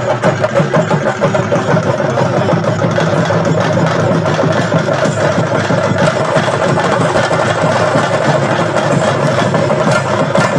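Fast, continuous drumming on chenda drums accompanying a Theyyam dance, a dense unbroken roll with no pause.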